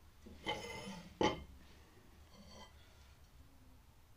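Tool handling on a wooden workbench: a honing steel picked up and its tip set down on the bench, a short rustle then one sharp knock about a second in.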